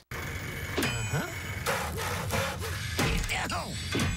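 Cartoon soundtrack from a TV broadcast: cartoon pigs' gliding, chattering voices over sharp knocks and clatter from their tools. The sound cuts in abruptly after a brief dropout as the newly tuned digital channel locks in.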